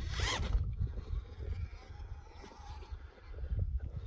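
FTX Ravine RC rock crawler's electric motor and geared drivetrain whirring as it climbs out of a dirt hole, loudest in a short burst at the start, then quieter. Low wind rumble on the microphone runs underneath.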